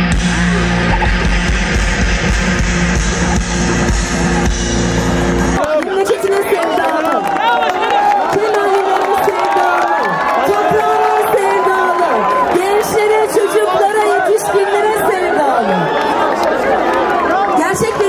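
Loud electronic dance music with a heavy beat, which cuts off abruptly about five seconds in. A large crowd shouting, cheering and clapping follows.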